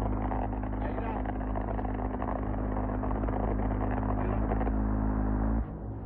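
XM134 minigun (7.62 mm rotary machine gun) firing one long continuous burst at about 50 rounds a second, heard as a steady low buzz that can pass for a helicopter. It cuts off suddenly near the end.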